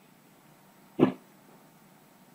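Near silence broken once, about a second in, by a single short voice-like sound.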